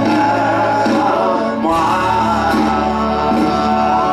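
Live band music with a male lead voice singing over guitar and drums.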